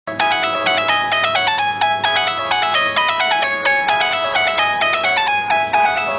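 Electronic ringtone-style melody: a fast run of short, bright, beeping notes stepping up and down in pitch, playing continuously.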